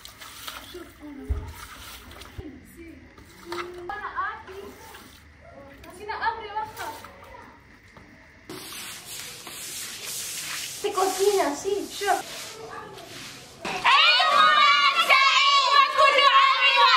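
Water swishing and splashing on a wet tiled floor as it is scrubbed and squeegeed, with a hose running and a few brief voices. Near the end, loud girls' voices break in, singing and shouting together.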